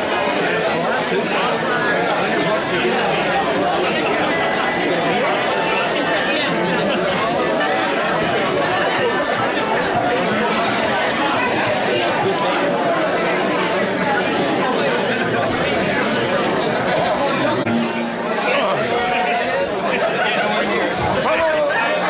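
Crowd chatter: many people talking at once, a steady babble of voices.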